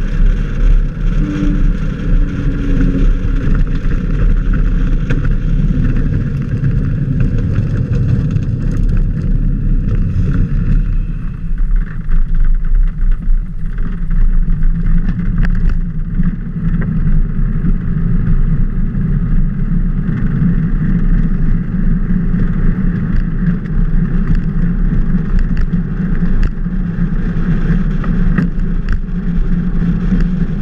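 Loud steady rumble of a velomobile riding fast on asphalt, picked up by a camera mounted on the vehicle: road and wind noise. Its tone changes about eleven seconds in, with less low rumble and more of a higher rushing sound.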